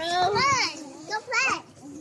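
Small children's high-pitched voices calling out and squealing in short calls, falling quieter near the end.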